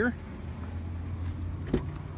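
Driver's front door of a 2014 Toyota Land Cruiser being opened: one sharp latch click near the end, over a low steady hum.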